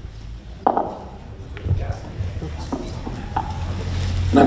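A brief murmured voice followed by a few light knocks and rustles of people moving about, over a low steady hum.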